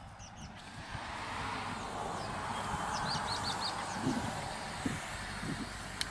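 Aerosol can of Krylon Kamar varnish spraying a first coat, a steady hiss that starts about a second in.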